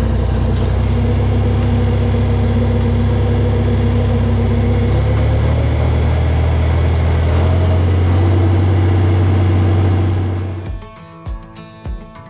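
John Deere 4020 tractor's six-cylinder engine running loud and steady under throttle, its note shifting a couple of times partway through. It cuts off about ten and a half seconds in and acoustic guitar music follows.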